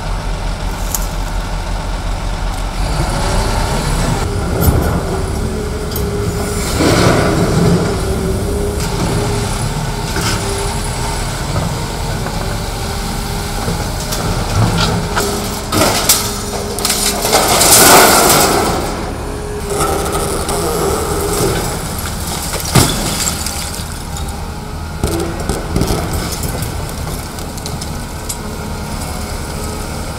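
Tracked hydraulic excavator with a demolition shear running, its engine and hydraulics holding a steady drone, while the jaws crush and tear concrete walls and sheet metal. Cracks and crashes of breaking masonry and falling debris break through several times, the loudest a little past the middle.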